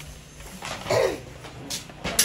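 A person's short vocal sound, falling in pitch, about a second in, with a light click near the end.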